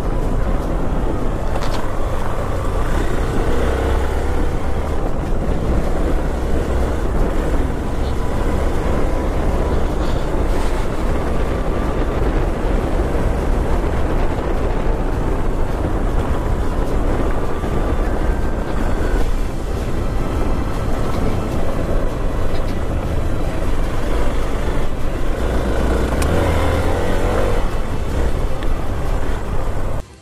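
Motorcycle on the move: a steady, loud rush of wind and road noise, with the engine underneath.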